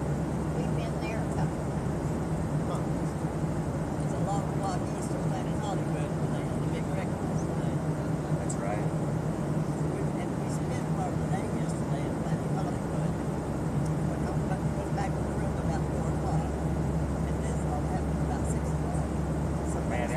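Steady airliner cabin noise: the constant drone of engines and airflow with a low hum, and faint murmuring voices beneath it.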